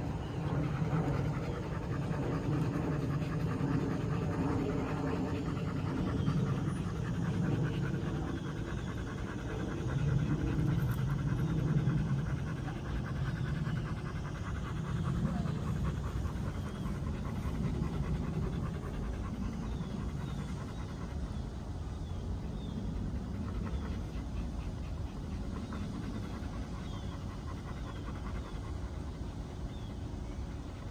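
A dog panting rapidly and steadily, easing slightly in the second half.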